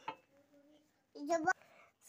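Near silence in a small room, broken about a second in by one short spoken word lasting about a third of a second, which ends in a sharp click.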